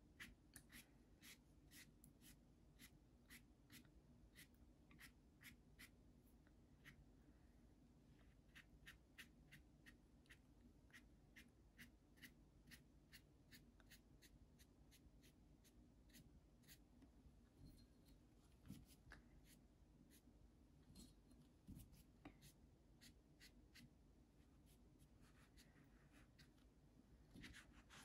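Faint, quick taps of a watercolour brush dabbing paint onto cotton watercolour paper, a couple a second in irregular runs, over a low steady room hum.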